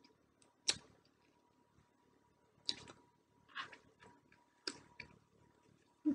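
Brittle shell of a fresh tamarind pod being cracked and picked off by hand: about five sharp, irregular crackles and snaps, the loudest about a second in.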